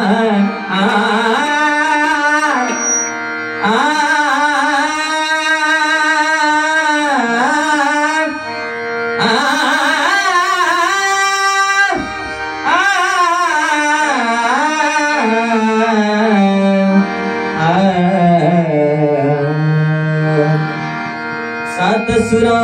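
Male devotional bhajan singer singing long, ornamented melodic phrases over a steady harmonium, with tabla and pakhawaj accompaniment.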